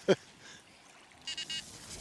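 Electronic bite alarm on a fishing rod giving a short, quick run of high-pitched beeps a little past halfway, the signal of a fish taking the bait.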